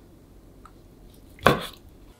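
A kitchen knife cutting through canned whelk meat and striking a wooden cutting board: one sharp knock about one and a half seconds in, with a faint tick before it.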